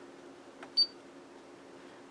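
A single short, high electronic beep from a Siglent digital oscilloscope's front panel as a button is pressed, about a second in, over a faint steady hum.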